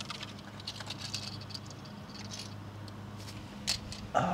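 Light, scattered clicks and taps of small die-cast toy cars being handled on a concrete path, with one sharper click near the end.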